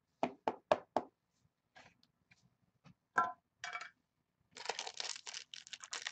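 Four quick sharp knocks, about four a second, then a few scattered clicks; from about halfway, the foil wrapper of a card pack crinkles and tears as it is opened.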